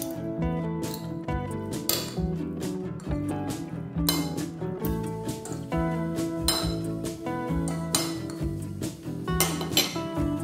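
Metal forks clinking and scraping against a ceramic plate as instant noodles are tossed and mixed, with sharp clinks every second or so. Background music plays under it.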